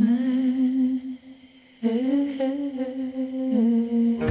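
A female singer humming a slow, wordless melody in two long, wavering phrases with a brief pause between them. The second phrase drops in pitch near the end.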